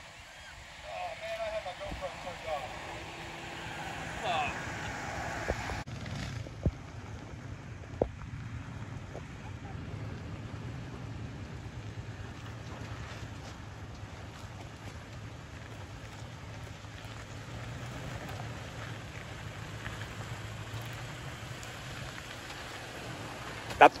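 Off-road vehicle engines on a dirt trail: first a distant engine with faint voices, then a steady low engine hum from a Toyota Tacoma pickup crawling slowly up a rocky trail, with a few single knocks of tyres on rock.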